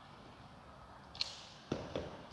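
Metal folding chair being carried and set down on a wooden floor. There is a brief high metallic clink about a second in, then a sharp knock of its legs on the floor and a lighter one near the end.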